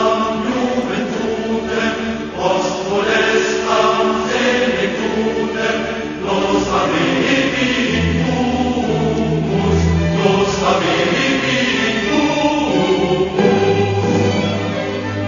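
Choral music: a choir singing throughout.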